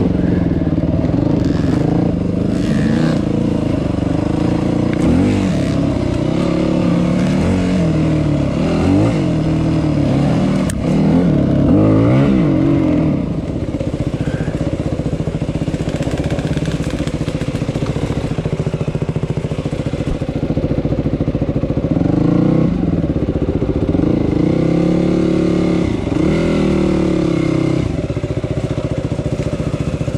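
Yamaha WR250 dirt bike engine revving up and down again and again through rough single track, settling to steadier running in the middle before revving hard again near the end.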